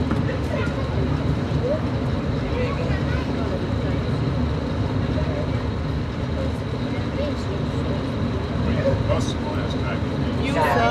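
Steady rumble of a moving passenger train heard from inside a dome car, with faint passenger voices in the background.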